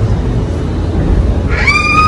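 Steady low rumble inside a moving Disney Skyliner gondola cabin. Near the end, a child's high-pitched squeal is held for about half a second.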